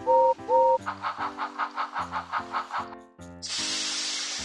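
Steam-locomotive sound effect: two short whistle toots, then rapid even chuffing at about five beats a second, then a long loud hiss of steam, all over background music.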